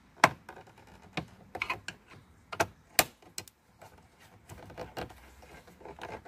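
Scattered sharp plastic clicks and taps from a thin flathead screwdriver pressing the retaining tabs of a 1987–93 Mustang's headlight switch in the dash, working the switch loose from the panel. The loudest clicks come just after the start and about three seconds in.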